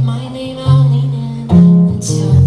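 Acoustic guitar strummed without singing: three chords struck, each left to ring and fade before the next.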